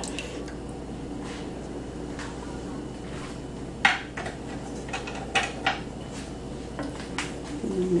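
A few sharp clinks and taps of kitchenware around a stovetop skillet, the loudest about four seconds in, over a steady low background hum.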